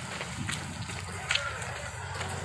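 Footsteps of a group of people walking on a dirt path, with indistinct voices and a steady low hum underneath. There is a sharper click just past a second in.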